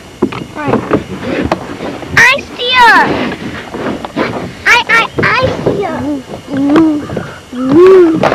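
Voices that are not made out as words: a child's high-pitched voice, with lower voices later on.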